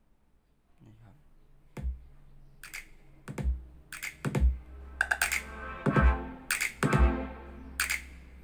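Music with a strong beat starting about a second in, played out loud through two Bluetooth speakers paired in stereo, a Harman Kardon Onyx Studio 4 and a JBL Flip 5: heavy bass thumps about once a second with sharp percussion between them.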